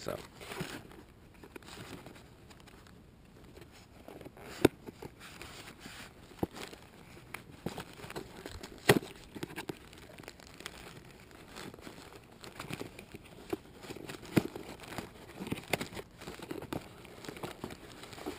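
Clear plastic bag crinkling and a cardboard mailer being torn open by hand: irregular rustling with scattered sharp snaps of the tearing card.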